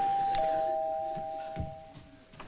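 Two-note doorbell chime: a higher ding followed by a lower dong, both tones ringing on and slowly fading.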